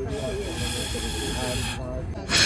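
Breath blown hard through a paper straw: one long, steady hiss that stops shortly before the end.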